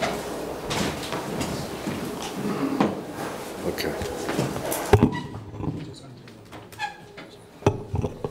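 Indistinct murmur of voices in a hall, with a sharp knock about five seconds in; after it the room goes quieter, with a few light clicks near the end.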